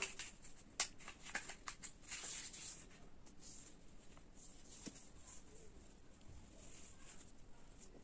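Faint handling of a sheet of colour paper being folded in half and creased: a few crisp clicks and a short rustle in the first three seconds, then quieter paper sounds.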